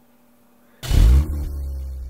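Transition sound effect: a deep rumble that starts suddenly with a loud burst about a second in, then holds as a steady low drone that slowly fades.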